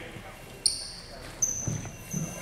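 Bells inside a goalball ball jingling as the ball is thrown and hits the court floor: a sudden jingle about half a second in and another near a second and a half, the second trailing off in a high ringing tone.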